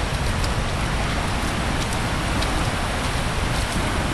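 A steady, even rushing noise with a few faint ticks.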